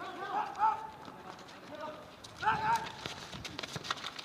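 Men shouting to one another during a street football game, with running footsteps and ball kicks on hard ground. The loudest shouts come about half a second in and again about two and a half seconds in.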